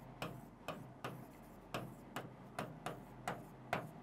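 Faint, irregular ticks, about two a second, of a pen tip striking and sliding on a writing board as words are handwritten stroke by stroke.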